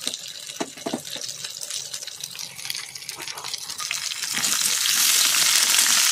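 Mixed vegetables frying in oil in a wok while a metal spatula stirs them, with a few clinks of utensils in the first second. The sizzling swells from about four seconds in and is loudest near the end.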